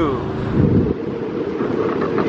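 Wind rushing over the microphone through the open window of a car moving at freeway speed, with road noise underneath; the deep rumble eases off about a second in.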